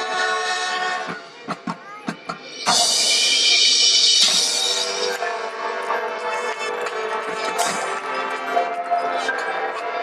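Marching band playing: sustained brass chords, then a quieter passage about a second in punctuated by a few sharp drum strikes. Just under three seconds in, the full band comes back in loudly with bright brass over percussion and holds on.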